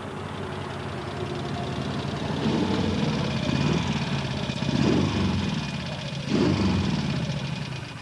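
Triking three-wheeler's Moto Guzzi 1000 cc V-twin engine running and revving. It grows louder from about two seconds in, its note rises in three surges, and it fades near the end.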